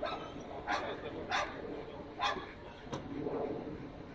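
A dog barking: three short, sharp barks in the first two and a half seconds, with faint voices behind.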